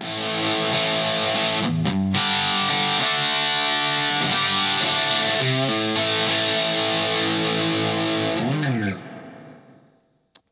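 Electric guitar with humbucker pickups played through an Orange Thunderverb 50 valve amp head, channel A with every EQ control at 12 o'clock: overdriven, ringing chords with two short stops about two seconds in. Near the end a bent note rises and falls, and then the sound dies away.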